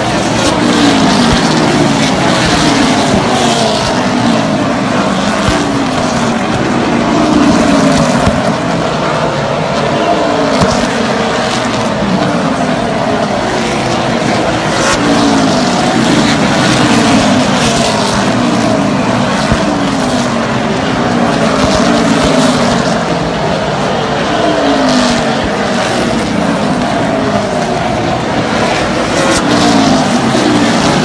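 Super late model stock cars' V8 engines running laps on a short oval, one car after another going past, each engine note dropping in pitch as it goes by.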